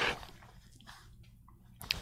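Faint, intermittent scratching of a graphite pencil on sketchbook paper, after a short louder rustle at the start.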